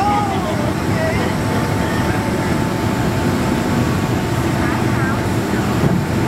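Steady cabin noise inside a Boeing 767-200ER on approach: engine and airflow noise heard from a seat over the wing, with a faint steady whine. Faint voices can be heard over it near the start.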